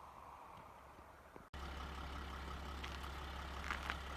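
A vehicle's engine droning steadily and low, heard from inside a moving vehicle. It cuts in abruptly about a second and a half in, replacing a faint steady rush.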